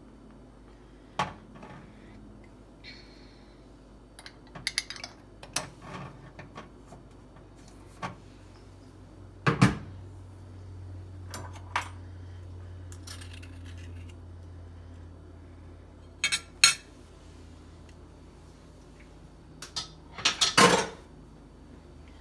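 Metal spoon and fork clinking and scraping against a ceramic dinner plate while spreading barbecue sauce over shredded chicken, in scattered knocks with louder clinks about ten, sixteen and twenty-one seconds in. A low steady hum comes on about ten seconds in.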